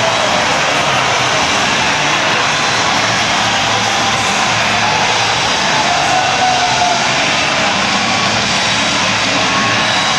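Arena crowd cheering in a continuous, steady roar.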